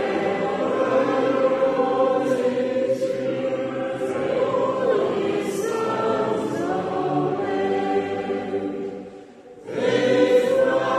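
A congregation singing a hymn in long held notes, with a brief pause between lines near the end.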